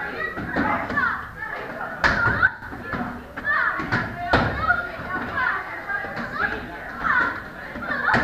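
Many children's voices chattering and calling in a large hall, with sharp smacks of kicks landing on handheld kick paddles. Two louder strikes come about two seconds in and a little after four seconds in.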